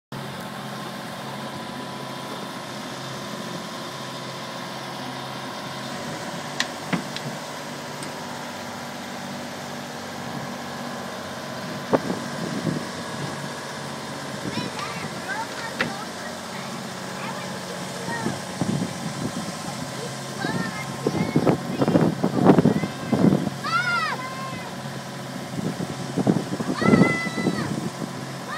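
Boat engine running steadily while the boat cruises along the river, with a few sharp knocks in the first half.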